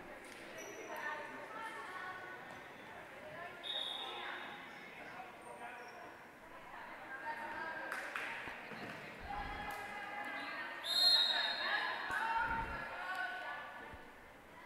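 Volleyball bouncing a few times on a hardwood gym floor amid faint, echoing players' voices in a large gym. Two short, high whistle blasts sound, a brief one about four seconds in and a louder one about eleven seconds in, typical of a referee's whistle signalling a serve.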